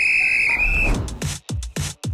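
A single high, steady lifeguard's whistle blast lasting about a second. It is followed by a deep bass hit and electronic trailer music with a stuttering, chopped beat.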